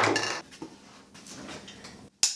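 A short loud clatter of hard objects knocking together at the start, then quieter scattered knocks and handling noise as packaged items are lifted out of a cardboard shipping box and set down on a table.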